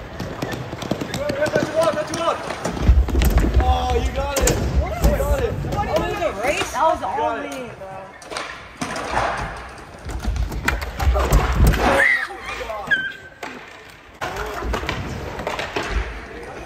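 A group of kids shouting and yelling over one another in a scramble, with low thumps and knocks from bodies and skateboards jostling.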